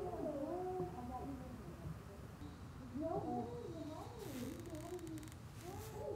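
A long, drawn-out wail whose pitch wavers and glides up and down, fading briefly about two seconds in and then rising again.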